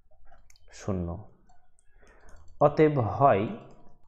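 Light clicking from a computer pointing device as handwriting is drawn on a screen whiteboard. The clicks fall around two short stretches of a voice, one about a second in and a longer one in the second half.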